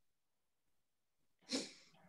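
Near silence on a video-call line, broken about one and a half seconds in by one short, breathy noise from a person.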